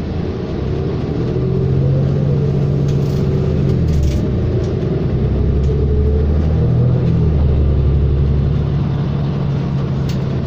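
Diesel engine of a 2019 New Flyer XD40 transit bus heard from inside the cabin, pulling away and gathering speed. Its note climbs and then steps down twice, about four and seven seconds in, as the bus shifts up through its gears.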